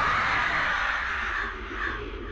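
A Trench creature's screech, a film monster sound effect: one long harsh cry that fades after about a second and a half, then a shorter cry just before the end.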